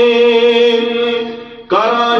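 A man's voice chanting devotional verse in a melodic sermon style. He holds one long steady note that fades out a little past the middle, and a new phrase begins near the end with a rising pitch.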